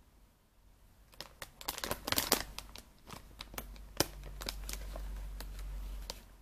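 Coffee-bean bag crinkling as it is handled: a run of sharp crackles starting about a second in, loudest around the middle, thinning out later. A steady low hum comes in under the last two seconds.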